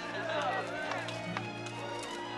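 Film music with sustained low notes under a crowd of people shouting and cheering without clear words, mostly in the first second. Running footsteps go with it.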